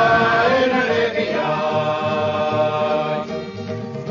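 A song: one voice holds a long sung note over a repeating bass line. The note bends slightly in the first second, then stays steady and drops away near the end.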